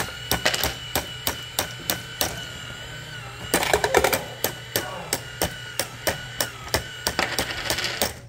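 Motorised football coin bank toy running: its small motor holds a steady whine while the spinning kicker mechanism clicks about three times a second, with a louder clattering stretch about three and a half seconds in.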